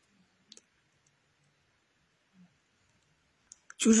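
Mostly near silence with a few faint clicks of a pen on paper: one about half a second in, and two just before a man starts speaking near the end.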